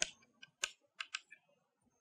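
Chalk tapping and scraping on a blackboard as lines are drawn: a string of about five short, sharp ticks over two seconds.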